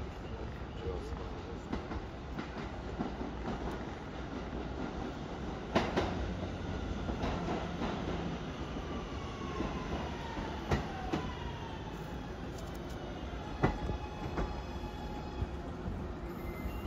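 R211A subway train pulling into the station and slowing to a stop: a steady rumble of wheels on rail, a few sharp clacks, and a whine that falls in pitch as it brakes.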